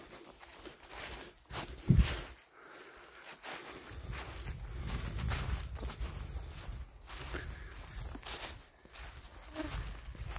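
A hiker's footsteps on a forest floor, with rustling of undergrowth and handling noise from a handheld camera. A loud thump about two seconds in is the loudest sound.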